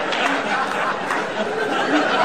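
Studio audience laughing and applauding after a joke: a dense, steady wash of many voices mixed with clapping.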